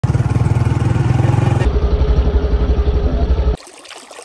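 A motor vehicle engine running loudly with a steady low throb; the sound changes abruptly about 1.7 s in and cuts off suddenly near the end. After it, faint trickling water.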